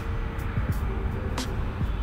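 Soft background music with a few held notes over a steady low outdoor rumble, with a single faint click about a second and a half in.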